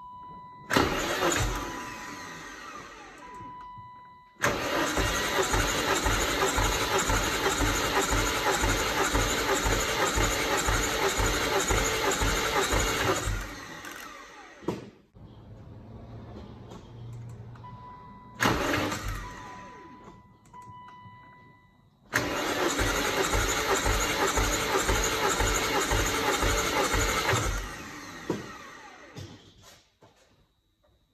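BMW E34 M5's S38 straight-six being turned over by the starter with its spark plugs out, spinning fast and evenly without firing. There are two long cranking runs, about nine seconds and then about five seconds, and the engine never catches. It is a spin-over to check for fuel leaking past freshly resealed injectors. Before each run an electronic beeping tone sounds on and off.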